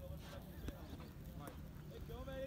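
Faint distant voices of people talking and calling out, with a few light knocks over a low wind rumble on the microphone.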